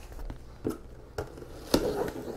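Hands handling a large cardboard shipping box, with three short taps on the cardboard as a small blade is brought to the packing tape; near the end a rougher scraping begins as the blade starts slitting the tape.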